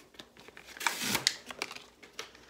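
Things being handled on a wooden tabletop: soft rustles and small clicks, with a louder knock about a second in as a roll of paper towels is set down.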